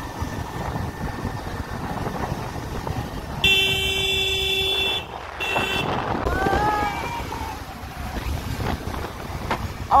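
A vehicle horn honks twice, a long blast of about a second and a half and then a short one, over the steady wind and road noise of a moving scooter.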